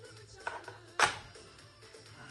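A plastic okey tile set down on the table with a sharp click about a second in, after a softer click just before. Faint music runs underneath.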